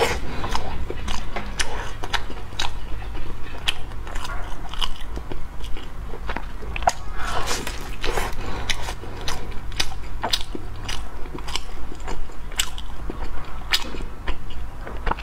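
A person biting into and chewing a flaky, crusty filled bread roll, the crust breaking in irregular crisp crackles, picked up close by a clip-on microphone.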